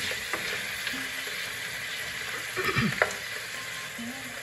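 Diced potatoes frying in hot oil in a pan, sizzling steadily. A spatula stirs them, louder about three seconds in.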